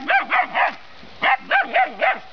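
A dog barking: about seven quick, high-pitched barks in two bursts, four at the start and three more about a second later.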